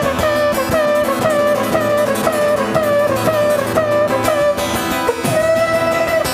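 Live acoustic guitar playing an instrumental break: a quick repeating figure of short notes, then one note held near the end.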